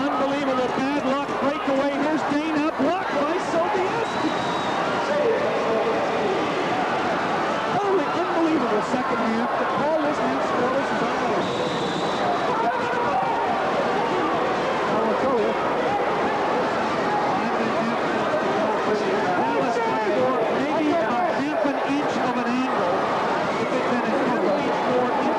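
Arena crowd: a steady din of many voices talking and calling at once, with a brief high tone near the middle.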